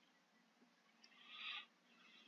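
Near silence, with one faint, short hiss about one and a half seconds in.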